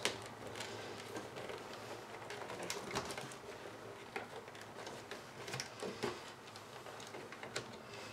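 Faint handling noise of a helmet liner: soft rustling of the ear padding with scattered small clicks as its plastic snap buttons are pressed into place, the sharpest about three seconds in, about six seconds in and near the end.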